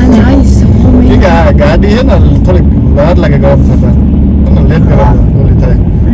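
Steady low rumble of a car driving, heard from inside the cabin, with a voice talking over it at intervals.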